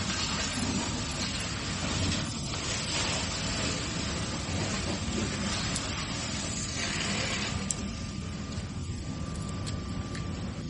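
Fire hose water spraying onto a burning pickup truck: a steady, loud rushing hiss of spray and steam over a low steady rumble, the hiss easing a little after about seven seconds.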